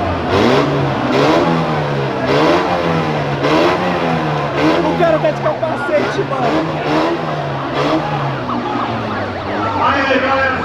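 Car engine revved in repeated blips, the pitch climbing and dropping about once a second, over crowd voices.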